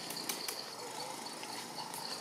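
Insects trilling: a steady, high, evenly pulsing trill, with a few short sharp clicks in the first half second.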